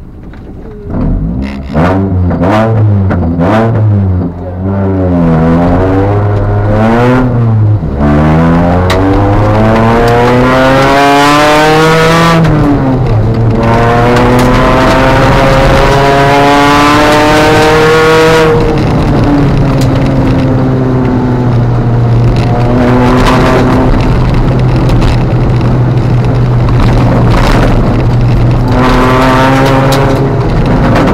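Ford Fiesta ST150's 2.0-litre four-cylinder engine heard from inside the cabin, pulling away about a second in and revving up through the gears with a sudden drop in pitch at each shift. After that it is held at high revs, with a few brief lifts off the throttle.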